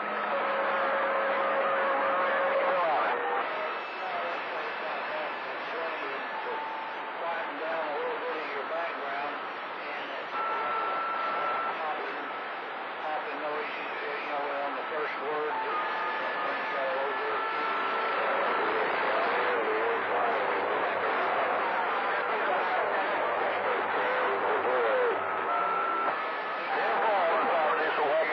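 CB radio receiving long-distance skip on channel 28: a dense bed of static with faint, garbled voices too weak to make out, and short steady whistling tones at several pitches coming and going.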